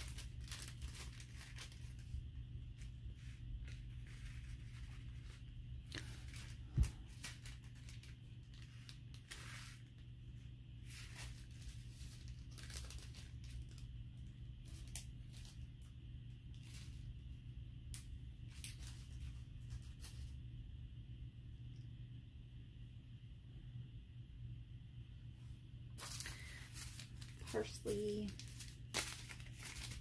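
Small seed packet crinkling and rustling in the hands as it is opened and its seeds shaken into a palm: scattered short crackles over a steady low hum. A single sharp knock about seven seconds in is the loudest sound.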